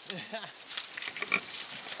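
Twigs, branches and reeds crackling and snapping in quick irregular clicks as someone pushes through dense bush, with faint low voices or grunts of effort.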